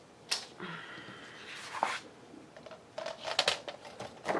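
Sheets of paper and card sliding and rustling, with several sharp clicks and clatters as a plastic paper trimmer is handled and set down on a cutting mat. There are single clicks about a third of a second in and just before the two-second mark, then a quick run of clicks and rustles near the end.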